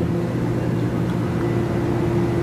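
Steady hum of a stationary TEMU2000 Puyuma tilting electric multiple unit standing at the platform, with several steady low tones and no change through the moment.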